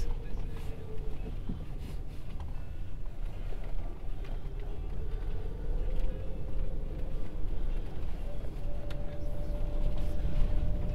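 Van cabin noise while driving: a steady low engine and road rumble, with a faint whine that slowly rises in pitch in the middle and holds steady near the end.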